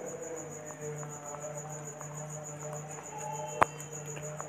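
Faint background with a steady low hum and a steady high-pitched whine, and one sharp click about three and a half seconds in.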